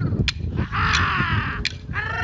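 A long, harsh, crow-like call about a second in, over sharp wooden knocks of clapsticks keeping time for an Aboriginal dance.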